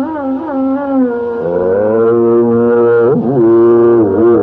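Carnatic classical music: a slow melodic passage of long held notes with slow wavering ornaments, sweeping through a quick glide about three seconds in before settling on a held note.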